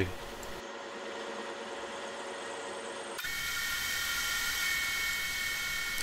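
Lathe running steadily while a boring bar cuts inside a spinning acetal roller, the audio sped up along with the picture. The steady whine jumps abruptly to a higher pitch about three seconds in, where the footage switches to a faster-sped clip.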